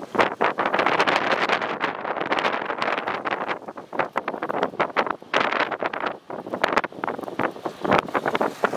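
Wind buffeting the microphone: loud, uneven rushing with rapid crackling blasts that rise and fall, easing briefly about six seconds in.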